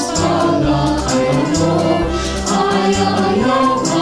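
Young three-part SAB choir, each singer recorded separately and mixed together as a virtual choir, singing in Tagalog over an accompaniment with a low bass line and a steady beat of light percussion.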